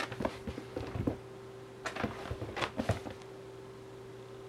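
A cat pouncing and scrabbling on a rug over a wooden floor: quick soft thumps and scrapes of its paws in two flurries, the first in the opening second and the second about two to three seconds in.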